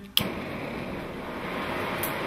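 EDELRID Hexon Multifuel stove lit on a gas cartridge: a single sharp click as it is lit, then the steady rushing hiss of the gas burner flame running.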